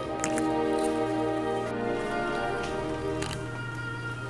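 Background music with slow, sustained instrumental notes, and a few short clicks near the start and again about three seconds in.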